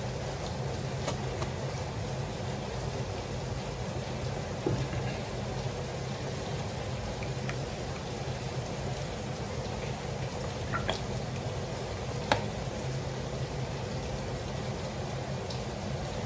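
Thick coconut cream poured from a carton into a bowl of beaten eggs, over a steady low hum and hiss, with a few light clicks or knocks.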